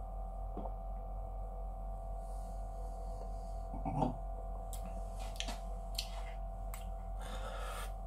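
Steady electrical hum with a fainter higher tone held underneath, while a person drinks from a glass and swallows. About four seconds in a short closed-mouth "mm-hmm" of approval, followed by a few faint clicks and a breathy exhale near the end.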